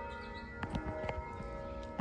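Church bells ringing, several tones sounding together and ringing on steadily, with a few faint knocks.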